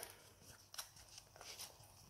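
Near silence, with a few faint soft taps as a planner's cover is handled and opened.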